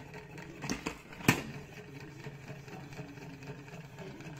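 OXO pump-action salad spinner with an empty plastic basket, pushed down by its pump knob and spinning with a steady whirring hum; a few clicks from the pump, the sharpest about a second in.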